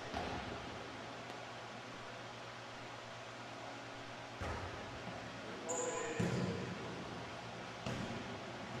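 Three thumps of a volleyball on the hardwood gym floor, the loudest about six seconds in, with a low hubbub of players' voices in the gym.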